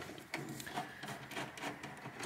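Screwdriver turning a screw out of the rear of a metal desktop PC case: faint, irregular scraping and rasping of the screw and driver.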